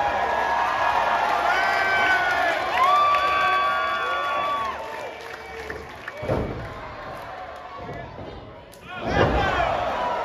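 Pro wrestling ring: crowd shouting with long drawn-out calls, then two heavy slams of bodies hitting the ring canvas, about six and nine seconds in, the second one louder.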